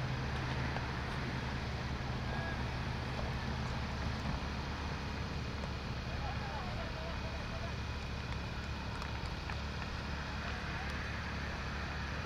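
Steady low outdoor rumble with a hum that fades about four seconds in, and faint distant voices about halfway through.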